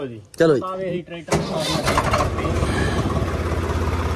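A blue farm tractor's diesel engine starts suddenly about a second in, then runs steadily with an even low pulse.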